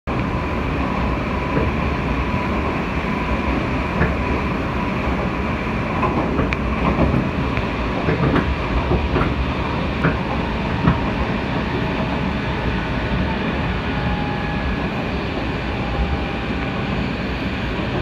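Inside a Tobu limited express Kegon train running at speed: a steady rumble of wheels and running gear, with a scattering of sharp clicks from about four to eleven seconds in. A faint steady whine can be heard for the first few seconds.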